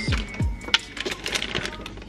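Almonds dropping from a bag into a plastic blender jar: a scatter of small, sharp clicks, the sharpest about three quarters of a second in. Background music with a beat plays under it.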